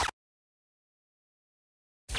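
The last instant of a short scratch sound effect cuts off abruptly right at the start, followed by dead digital silence.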